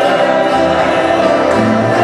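Gospel music sung by a group of voices, with held bass notes underneath, playing continuously.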